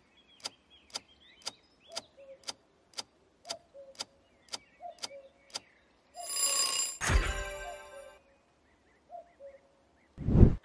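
Quiz countdown timer sound effect ticking about twice a second, then a short ringing alarm as time runs out about six seconds in, followed by a reveal sound with a low thump and a ring that fades out within a second.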